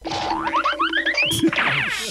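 A cartoon-style sound effect: a quick run of short whistle-like notes climbing step by step in pitch, then a tangle of sliding tones near the end.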